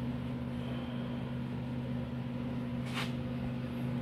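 A steady low electrical hum. A faint brief rustle comes about three seconds in.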